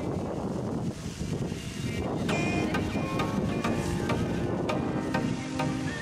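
Wind rumbling on the microphone, with background music coming in about two seconds in and continuing over the wind.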